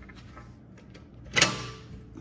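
Faint scattered ticks over a low background, then a single sharp clack about one and a half seconds in with a brief ringing tail.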